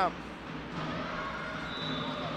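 Sports-hall background between rallies: a low, steady murmur of distant voices, with a faint thin high tone briefly near the end.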